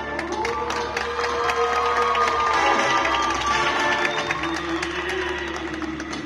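Stage performance music with a quick run of claps or percussive hits, mixed with an audience cheering and clapping.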